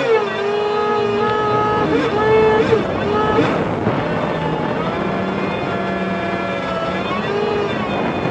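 Jet ski engine running at speed. Its pitch drops just after the start, wavers around the middle and rises and falls again near the end. Water rushes and sprays against the hull throughout.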